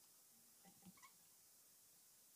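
Near silence, with a few faint brief sounds just under a second in.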